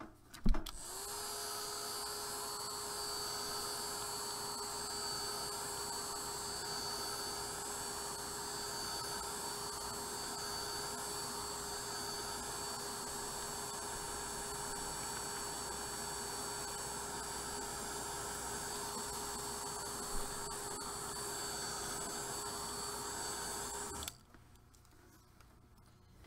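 Craft heat tool switched on with a click about half a second in, then running steadily, its fan blowing with a steady motor whine, until it is switched off abruptly at the end. It is drying the paint or ink on a paper card.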